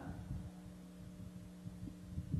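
Faint steady electrical hum from the church's sound system, several held tones over a low rumble, heard in a pause between sermon sentences; one small click near the end.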